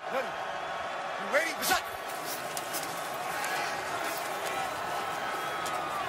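A quarterback's pre-snap cadence call, a shouted "Ready?", heard from the field mics about a second in, over a steady haze of stadium ambience.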